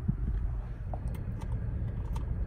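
Ford Bronco Sport's 1.5-litre turbo three-cylinder idling in Park, a steady low rumble heard from inside the cabin. Over it come a few faint clicks in the second half, from the drive-mode dial being turned.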